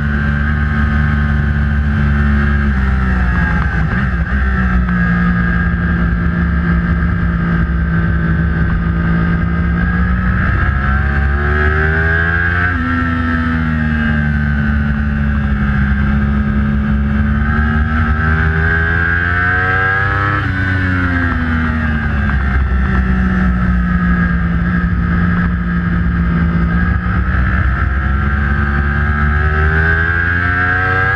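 2012 Yamaha YZF-R1's crossplane inline-four engine at racing pace on a track, heard from onboard. The engine pitch falls several times as the bike brakes and shifts down for corners, then climbs again under hard acceleration.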